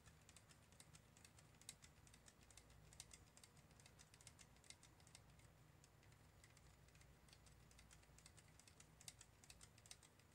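Faint, quick, irregular clicking and light scraping of a stir stick against the inside of a cup as pigmented resin is stirred, over a low steady hum.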